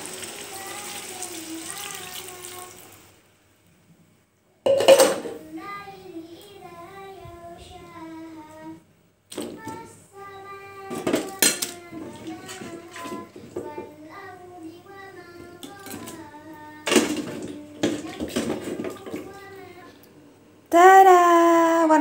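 Water poured from a glass into a wok of sautéed spices, a steady splashing pour lasting about three seconds. After a short pause, a high, wavering melodic voice carries on for most of the rest, with a few sharp knocks of a utensil against the pan.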